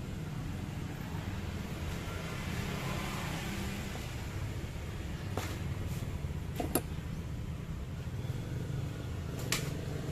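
Steady low mechanical hum, like a fan or an idling engine, with a few sharp clicks in the second half.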